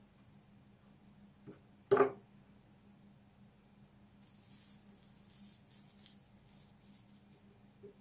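A single sharp knock about two seconds in. From about four seconds, a faint high crackling hiss with several ticks: flux sizzling under a hot soldering iron as its tip meets the fluxed copper foil.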